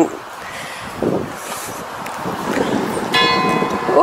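A church bell strikes once near the end, a single clear stroke whose ringing tone holds on steadily after the strike.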